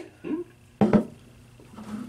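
Mostly quiet room tone, broken by one short sharp knock or click a little under a second in.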